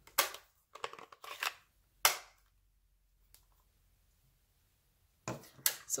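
Sharp plastic clicks and taps of a stamp ink pad being set down on the craft mat and its hinged lid snapped open, the loudest a single snap about two seconds in. A few more short handling clicks come near the end.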